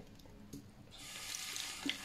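Water running from a tap into a sink, a steady hiss that starts about a second in.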